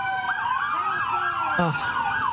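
Police siren sounding, its pitch gliding in long sweeps and then in a quick, repeated up-and-down yelp. A person shouts briefly near the end.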